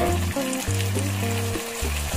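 Background music: held notes over a bass line that changes every half second or so.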